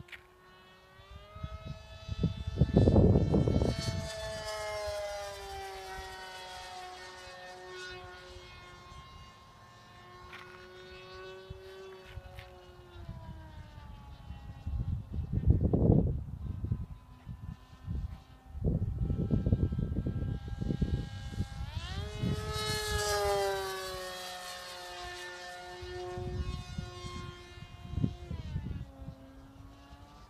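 Electric motor and propeller of a Carbon-Z Scimitar RC flying wing whining as it flies overhead. The pitch slides up and down with each pass. The loudest passes come a few seconds in, around the middle and past the three-quarter mark, and each falls in pitch as the plane goes by.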